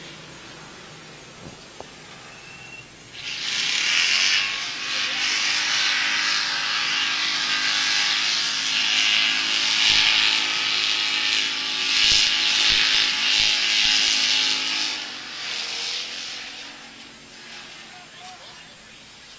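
Sportsman stock car's engine running as the car drives its victory lap. It comes in loud and raspy about three seconds in, holds for about twelve seconds, then fades.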